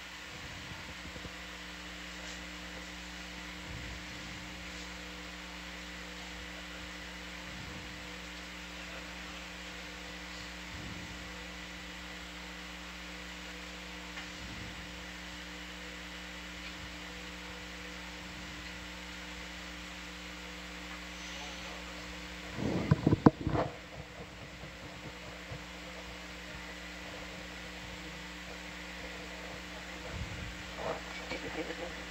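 Steady electrical hum from electronic equipment, several fixed tones over a low hiss. About three quarters of the way through comes a brief, loud cluster of crackling knocks.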